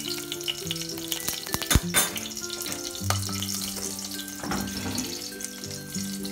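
Whole spices (bay leaves, green cardamom and cloves) sizzling in hot vegetable oil in a stainless steel pan, with two sharp knocks about two seconds in.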